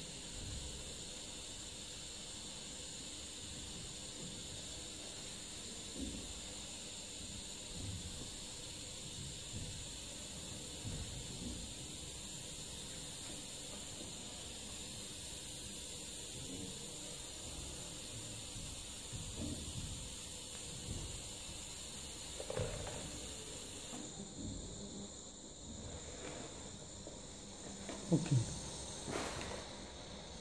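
TIG welding arc on a steel pipe joint: a steady, faint hiss of the arc under its argon shielding gas, which stops about three-quarters of the way through as the weld is finished.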